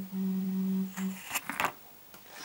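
A woman's long, level hesitation hum ("mmm") lasting just over a second, followed by a couple of short soft clicks.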